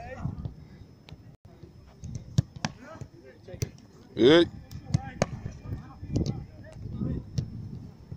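A football being kicked and caught during goalkeeper drills: sharp, scattered thuds of the ball on boots and gloves. A loud, short shout about four seconds in, with low voices around it.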